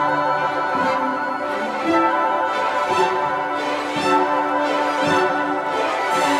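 Orchestral music led by bowed strings, playing steadily with a gentle pulse about once a second.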